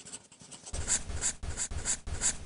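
A pen scratching across paper in quick drawing strokes. The strokes grow louder and more regular about a third of the way in, at about five a second, each with a soft thud underneath.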